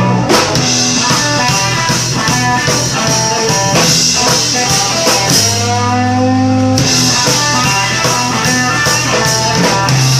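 Live blues-rock band: electric guitar and drum kit playing an instrumental passage, with a long, bending held guitar note about halfway through.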